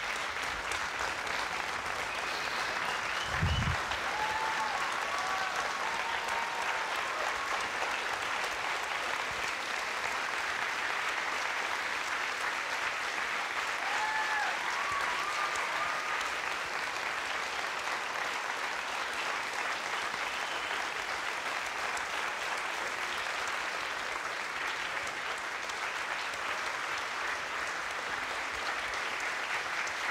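Large lecture-hall audience giving a sustained standing ovation: steady, dense clapping with a few short cheers in the first half. A dull thump sounds about three and a half seconds in.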